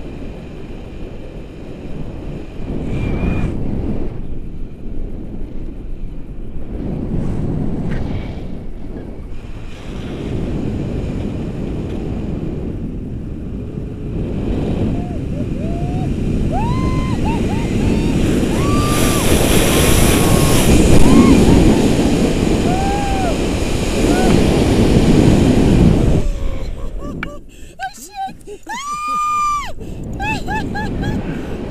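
Wind buffeting the camera microphone during a tandem paraglider flight, a loud, rough rushing that swells in the second half. Over it, from about halfway through, a woman gives short, high exclamations and laughs, the loudest near the end.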